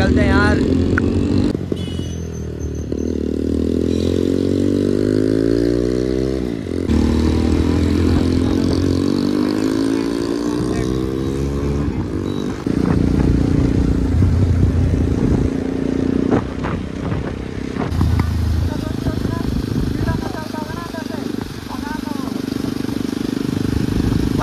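Motorcycle engine heard from the pillion seat, accelerating. Its pitch climbs for about four seconds, drops at a gearshift about seven seconds in, then climbs again until about twelve seconds in, after which it runs more steadily.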